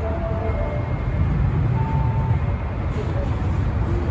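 Osaka Metro 30000 series subway train running into the station, a steady low rumble of wheels on rail as it approaches the platform.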